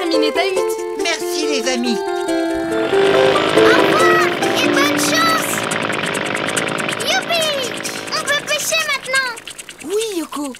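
Cartoon hovercraft sound effect: a dense rushing motor noise that starts about three seconds in and fades away a few seconds later as the craft drives off. Light plucked-string cartoon music plays before and over it.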